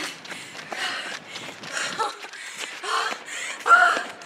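Jogging footsteps on a rubber running track with hard, tired breathing, ending in a loud voiced gasp near the end as the runner gives out.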